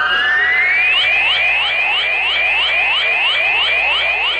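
Electronic radio sound effect marking the game clock: a steady high beep, then a tone gliding upward, then a quick run of short rising chirps, about four a second, that carries on through the rest.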